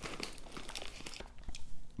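Crinkling and rustling of a shiny plastic popcorn bag as a hand rummages inside it for a piece of popcorn: an irregular crackle of small clicks.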